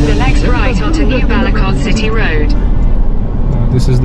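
Steady low road and engine rumble inside the cabin of a Toyota Hilux Revo pickup driving along a highway. A voice sounds over it for the first two seconds or so, then only the rumble is left.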